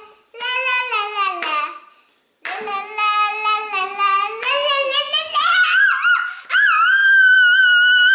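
A young girl's high voice singing and chanting in short phrases, climbing near the end into a long, held, high-pitched squeal.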